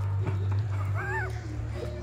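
A dog gives one short, high whine about a second in that rises and then falls, over a steady low hum.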